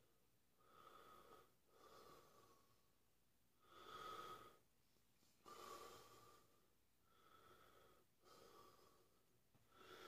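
A man breathing faintly and slowly in and out through an open mouth, about seven breaths, as he rides out the burn of a Carolina Reaper pepper.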